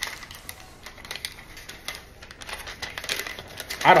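Pen writing on paper: a run of quick, irregular scratches and ticks.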